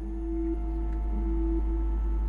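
Ambient background score: a sustained drone of several held tones over a deep low hum, swelling slightly, with no beat.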